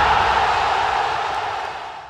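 The fading tail of a TV channel's logo intro sting: a steady, noisy wash that slowly dies away.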